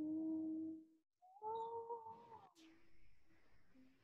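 Two drawn-out vocal notes: a low steady one for about a second, then a higher one lasting about a second.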